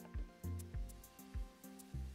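Background music with a steady beat: low kick-drum hits about twice a second under held notes and light high ticks.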